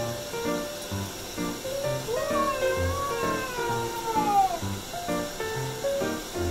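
A kitten being bathed lets out one long meow about two seconds in, rising and then slowly falling in pitch over about two and a half seconds: a complaint from a cat that dislikes baths. Background music with short, evenly spaced notes plays underneath.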